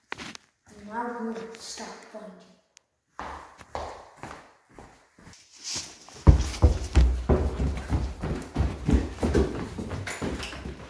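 Footsteps hurrying across a hard tiled floor. About six seconds in come loud rumbling and irregular knocks from the phone's microphone being jostled at close range.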